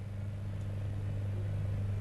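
Steady low hum with no speech over it, the constant background of the studio sound.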